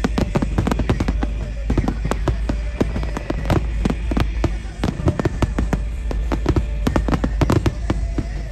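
Aerial fireworks shells bursting in a rapid barrage, many sharp bangs and crackles a second over a steady low rumble.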